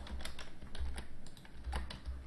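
Computer keyboard being typed on: a run of light, irregularly spaced key clicks as a line of code is entered.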